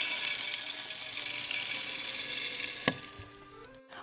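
Small rocks poured from a glass cup into a glass terrarium jar, rattling onto the glass and the larger stones already inside. It is a dense, continuous rattle of many small clicks that ends a little past three seconds in.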